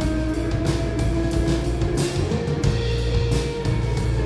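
Live indie electronic-pop band playing an instrumental passage with no vocals: held electric guitar and keyboard notes over a steady beat, about three strikes a second.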